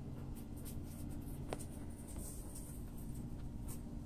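Quiet outdoor background noise with a low steady hum and a few faint scratchy rustles and soft clicks.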